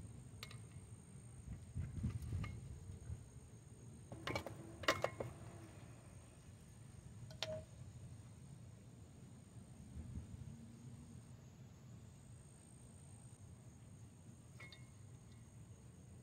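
A few faint, sharp metallic clicks and clinks, the loudest about five seconds in, as a pry tool works the old grease seal out of the back of a front wheel hub.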